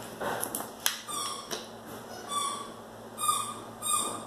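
A pet animal calling with short, repeated high squeaks, about one a second from about a second in, with a few light clicks near the start.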